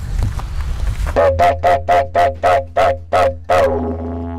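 Mallee-wood didgeridoo with a beeswax mouthpiece, played: a low steady drone begins about a second in, pulsed in a rhythm about three or four times a second.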